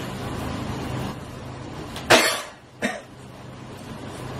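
A person coughing twice, a loud cough about two seconds in and a shorter one a moment later, over a steady low room hum.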